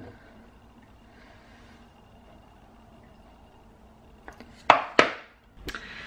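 Kitchenware being handled: a small click at the start, several quiet seconds of room tone, then a few sharp knocks and clinks of hard cups or a blender cup set down, the loudest about five seconds in.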